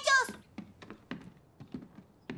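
Light cartoon footstep sounds, a run of short soft taps about three to four a second. A brief voice sound fades out at the start.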